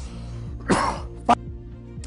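A person clearing their throat in two short bursts, the first about three-quarters of a second in and a shorter one just after, over a steady background music bed.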